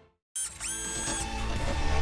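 Music fades out into a brief silence. About a third of a second in, a TV-intro sound-effect stinger starts: a tone that sweeps up and holds for about half a second, with a mechanical clatter over music.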